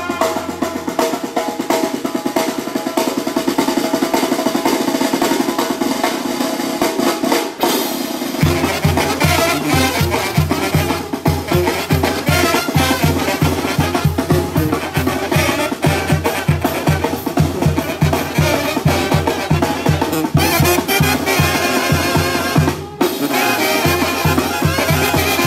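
Brass band playing: trombones and trumpets over a drum kit, with rapid snare drumming at first. About eight seconds in, a steady low pulse of about three beats a second comes in and carries on.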